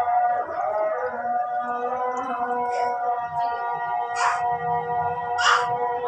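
Maghrib call to prayer (adhan) sung by a man over a mosque loudspeaker, one long held, slowly wavering note with a few hissing consonants in the second half.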